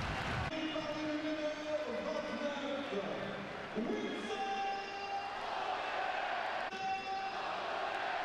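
Football stadium crowd singing and chanting: many voices holding notes that change every second or two, over the general crowd noise.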